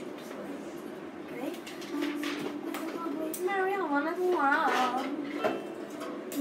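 A child's voice singing or humming a simple melody with wavering pitch, starting about two seconds in, together with notes from a plucked string instrument.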